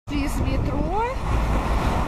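Steady low rumble of car traffic passing on a busy multi-lane road. A voice is heard briefly in the first second.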